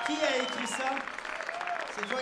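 Audience applauding at the end of a live song, dense clapping with voices calling out over it.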